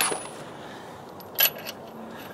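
Steel lug nuts clinking against the wheel studs and each other as they are handled and threaded on by hand: two short metallic clinks with a thin ring, one at the start and one about a second and a half in.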